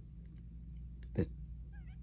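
Faint, short, wavering high-pitched calls from a small animal, twice: once at the start and again near the end, over a steady low hum.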